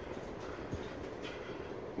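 Steady low background noise of the room with a faint hum and no distinct events.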